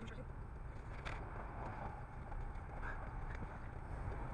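Steady low hum of a stopped car idling, heard from inside the cabin, with faint muffled voices now and then.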